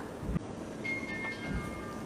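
Quiet arena room tone with two soft low thumps. In the middle a few faint high tones step down in pitch, like a short chime.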